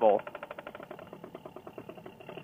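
Paramotor's two-stroke engine idling with a fast, even pulse.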